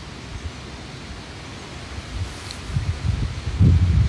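Wind buffeting a phone's microphone: a low hiss at first, then loud, irregular low gusts that build through the second half.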